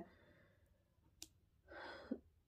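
Near silence in a pause of speech, with one faint click a little past a second in, then a short breath taken by the speaker near the end.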